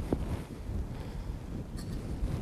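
Low, fluctuating rumble of wind-like noise on the microphone, with a faint small click near the end.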